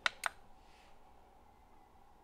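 Two quick plastic clicks, about a fifth of a second apart, as a coffee maker's ON/OFF push button is pressed and released to switch it on, followed by a faint steady hum.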